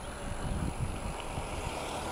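Steady wind rush on the microphone mixed with tyre and road noise from an electric bike riding along tarmac.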